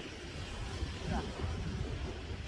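Wind buffeting the microphone: a steady low rumble, with a man saying one counted number about a second in.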